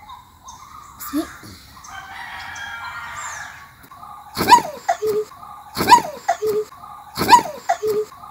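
A chicken calling loudly and repeatedly from about four seconds in: a harsh call roughly every second and a half, each followed by a short lower note.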